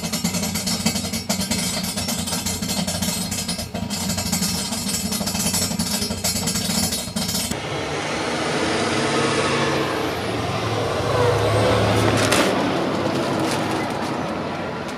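Motorhome engine and road noise heard from inside the cabin while the RV is being driven. It is loud and steady and changes character about halfway through.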